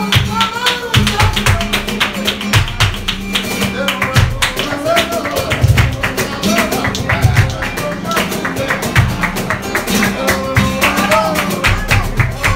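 Live flamenco: two Spanish guitars played under dense, fast hand-clapping (palmas) and low cajón thumps. A singing voice comes in near the start and again near the end.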